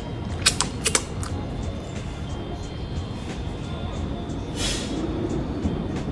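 A small plastic cup of iced coffee wrapped in cling film being handled, with a few sharp crinkly clicks in the first second. Near the end comes a short sniff as the coffee is smelled.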